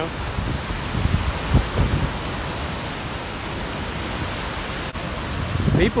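Water gushing out of a dam's outlet works into the tailwater below: a steady, unbroken rush of churning whitewater.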